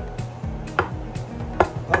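Background music playing, with a couple of short knocks as a frying pan is pressed down onto a fried green plantain on a wooden cutting board to smash it flat for tostones.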